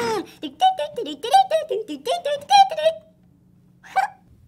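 Toy school bus's electronic voice sings a short run of bouncy notes, then cuts off suddenly about three seconds in as its stop-sign arm swings out. A short sharp sound follows just before the end.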